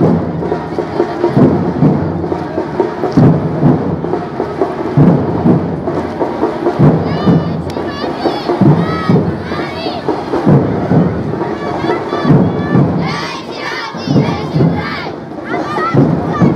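Street procession sound: a heavy drum beat roughly every two seconds under a loud crowd. High shouting voices come in from about halfway through.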